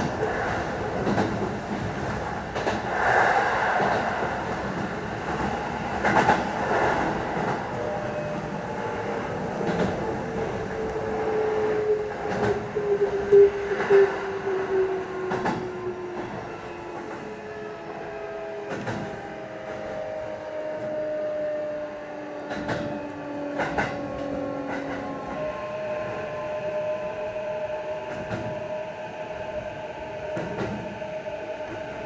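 Sanyo Electric Railway commuter train running, heard from inside the front car: the wheels click over rail joints every second or two. From about a third of the way in, an electric motor whine falls steadily in pitch as the train slows, and the running sound grows a little quieter.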